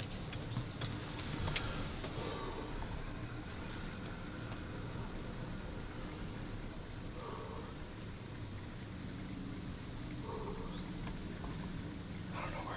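Insects chirring in a steady, high continuous trill over a low steady rumble, with one sharp click about a second and a half in.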